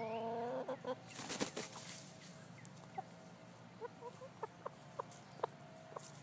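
A bird calling: one drawn-out call in the first second, a short burst of noise between about one and two seconds in, then a scattering of short, sharp calls.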